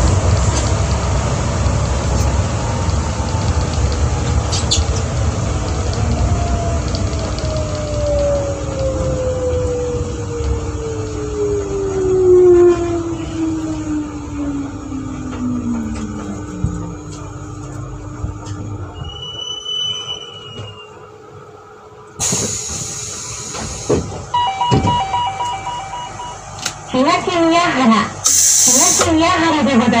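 New Shuttle 1050-series rubber-tyred guideway train braking into a station: its traction-motor whine falls steadily in pitch over about fifteen seconds while the running rumble fades to a stop. After it stops there is a loud burst of air hiss lasting about two seconds, then a short chime of steady tones.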